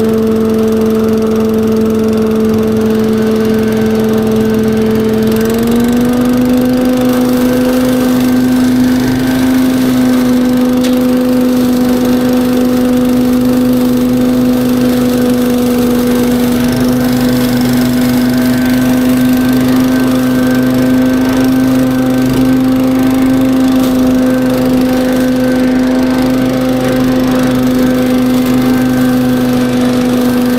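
Billy Goat KV601SP walk-behind leaf vacuum running steadily under power, its engine and fan giving a loud, even hum. The pitch steps up slightly about five and a half seconds in and then holds.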